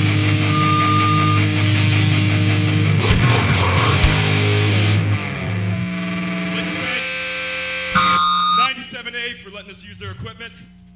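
Grindcore band playing live with distorted electric guitars. About five seconds in, the full playing gives way to held, ringing guitar notes, then a last hit about eight seconds in, and the sound dies away as the song ends.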